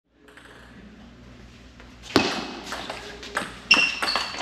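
Table tennis ball hits in a rally, the ball striking paddles and the table. After a faint hum of hall noise, sharp ringing pings start about two seconds in and come a few per second.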